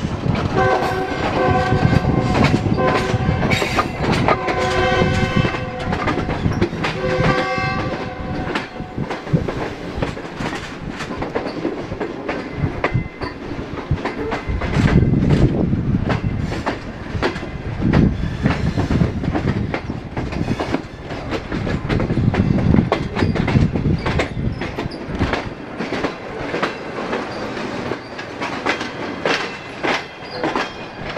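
A train horn sounding several blasts in roughly the first nine seconds, over the rumble of the moving train. After that the wheels clatter steadily over rail joints and points.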